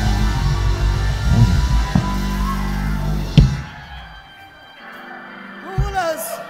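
Live church band playing loudly with heavy bass during a praise break, stopping on a sharp final hit about three and a half seconds in and then dying away to a faint tail.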